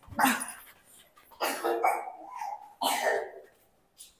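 A dog barking several times in short, rough bursts.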